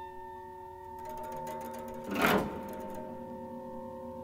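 Avant-garde big-band jazz with percussion: several ringing tones held steady, a quiet rattle of percussion coming in about a second in, and one loud crash that swells and fades about halfway through.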